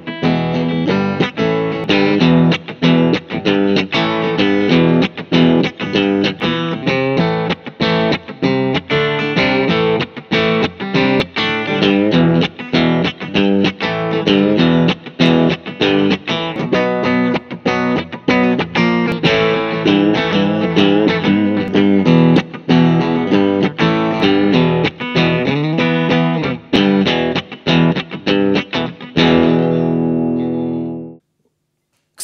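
Electric guitar with the bridge pickup through a tube amplifier, playing one continuous riff of quickly picked notes: first on a Squier Affinity Telecaster, then partway through on a Fender Esquire Relic Custom Shop. It ends on a held chord.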